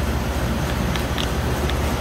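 Heatcraft refrigeration condensing unit running just after restart: a steady low hum from the compressor and condenser fan, with a few faint ticks about a second in.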